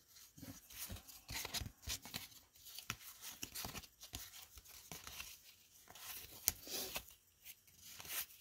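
Stack of 1989 Upper Deck baseball cards being leafed through by hand, the glossy cards sliding and flicking against each other in short, irregular scrapes. Faint.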